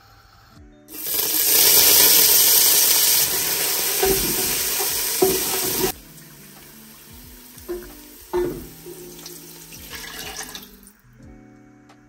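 Chopped green herbs hitting hot oil in a metal pot and sizzling loudly, starting about a second in and cutting off abruptly in the middle. After that the sizzle carries on more quietly with a few light knocks against the pot.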